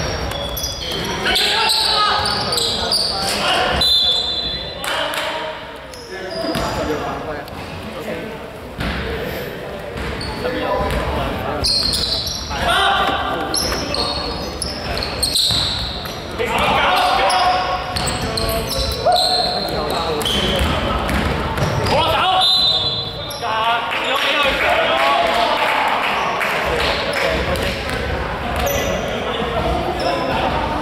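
Live basketball game in a large sports hall: the ball bouncing on the court and players' voices calling out, with the echo of the hall.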